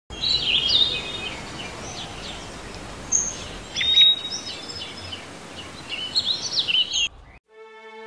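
Several small birds chirping and singing in quick, high, gliding phrases over a steady outdoor hiss; it cuts off suddenly near the end.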